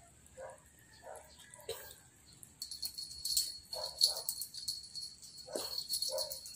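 Miniature pinscher chewing and smacking its lips on soft food taken from fingers, in short soft bursts. About two and a half seconds in, a loud, high, steady ringing with a fast flutter sets in and carries on.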